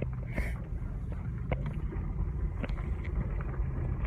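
A vehicle driving, heard from inside the cab: a steady low engine and road drone with scattered light clicks and rattles.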